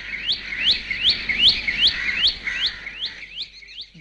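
A bird calling in a quick, even series of short rising chirps, about three a second.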